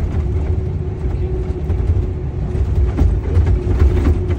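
Cab interior of a moving heavy truck: steady low engine and road rumble with a steady hum running through it, and a few light knocks about three seconds in.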